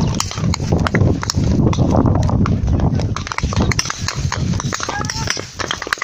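Handling noise on a covered phone microphone: rubbing rumble and a rapid, irregular series of small knocks and clicks, with voices behind.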